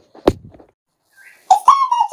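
A single sharp knock, then a high-pitched, whistle-like vocal sound with wavering pitch starting about a second and a half in.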